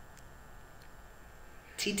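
Faint room tone during a pause in talk, with a voice starting to say a name near the end.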